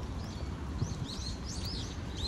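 Small birds chirping in a run of short, high calls over a steady low outdoor rumble.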